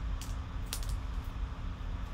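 Foil trading-card pack crinkling as it is pulled open by hand: a few short crackles, the loudest cluster just under a second in, over a steady low hum.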